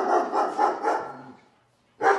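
Several dogs barking in quick, overlapping calls, stopping about a second and a half in.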